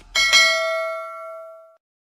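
Notification-bell sound effect of an animated subscribe-button graphic: a bright bell ding struck twice in quick succession, ringing out and fading away over about a second and a half.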